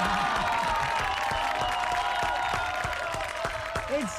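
A small group clapping and cheering as a song ends, with the music's final note still held underneath.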